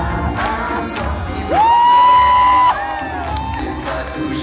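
Live pop-rock band music with audience cheering. About a second and a half in, a loud high note slides up and is held for about a second, then stops abruptly.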